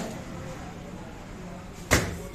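A single sharp knock or click just before the end, over faint low background noise.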